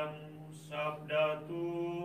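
A man chanting the Gospel acclamation verse of a Catholic Mass in Indonesian: a slow liturgical melody on long held notes, over a steady low sustained tone.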